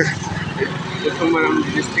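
Voices talking over the steady low rumble of road traffic.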